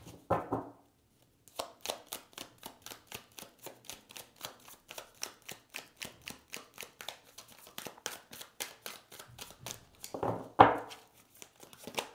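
A Winter Waite tarot deck being shuffled by hand: a rapid, even run of soft card clicks, about five a second, through most of the stretch. There is a brief louder vocal sound near the end.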